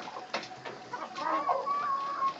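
A flock of young white Silkie chickens making soft calls while feeding, with a drawn-out high peep starting about halfway through.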